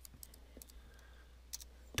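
Faint computer-keyboard keystrokes, a few clicks near the start and a couple more about one and a half seconds in, over a low steady hum.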